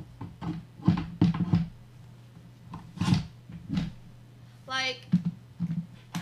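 Irregular knocks and clunks of a gaming chair's backrest and parts being handled and fitted during assembly, over a steady low hum. A short vocal sound comes just before five seconds in.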